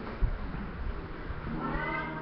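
Steady background noise with a sharp click about a quarter second in; near the end a high voice starts singing, rising in pitch.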